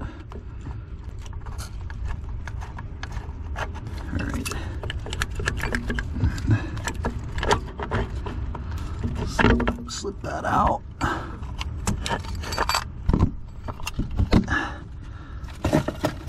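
Irregular metallic clicks, taps and scrapes from hand work on an OMC Stringer outdrive's electric tilt motor: its quarter-inch mounting bolts being turned out by hand and the motor worked loose from its mount.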